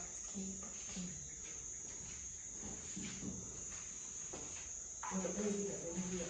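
Crickets chirping in a steady, continuous high-pitched chorus, with faint low voices now and then, most clearly near the end.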